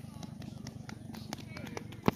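Faint voices of people talking at a distance, with scattered light clicks over a steady low hum.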